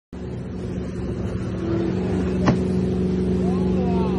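Wake boat's inboard engine running steadily under way, with water rushing along the hull and wake. A single sharp knock about halfway through.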